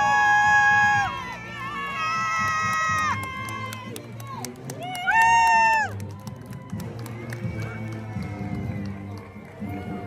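Marching band brass playing three long held chords, each scooping into the note and falling off at its end, with sharp drum and cymbal hits under them and a crowd cheering.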